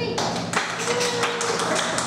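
Audience clapping, starting right as the music stops.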